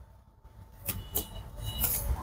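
A moment of silence, then faint handling noise from a hand-held camera being moved, with a low rumble and a couple of soft clicks.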